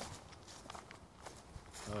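Footsteps on grass strewn with fallen leaves: faint, irregular soft steps. A man's voice comes in near the end.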